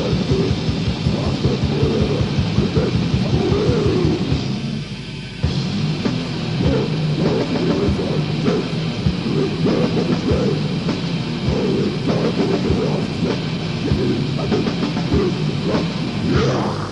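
Old-school Finnish death metal from a 1990 demo cassette: heavily distorted guitars, bass and drums playing together. Rapid kick-drum hits at first; about five seconds in the band briefly drops out, then comes back at a slower, evenly spaced beat.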